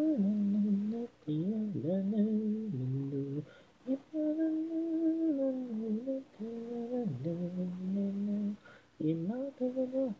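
A voice singing a melody a cappella without words, in phrases of long held notes that slide up and down between pitches, with short breaks between phrases.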